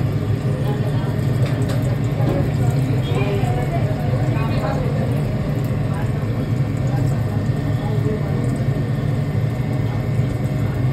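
Steady low mechanical hum, with indistinct voices talking in the background.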